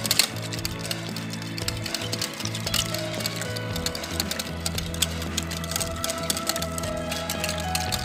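Wire whisk beating cream and cream cheese in a glass bowl, the wires clicking rapidly against the glass, over background music with held bass notes.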